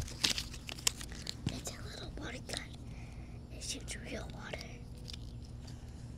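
Plastic wrapping crinkling and small plastic pieces clicking as a Mini Brands toy is unpacked by hand, with sharp clicks mostly in the first second. A child's quiet voice is heard in the middle.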